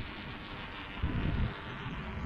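Electric kick scooter's motor whining steadily as it rides up the path toward the microphone, with a low rumble swelling about a second in.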